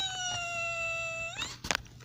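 A person's high-pitched voice holding one long wailing note, its pitch sliding slowly down and turning up just before it stops, followed by a couple of clicks.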